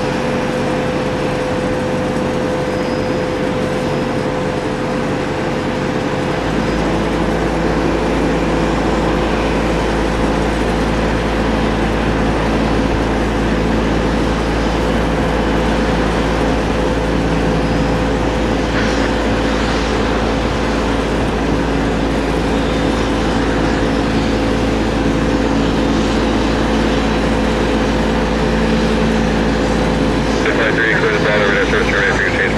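Steady turbine drone of a Boeing 757 jet airliner running during pushback, with a steady hum. A deeper low rumble comes in about six seconds in and holds.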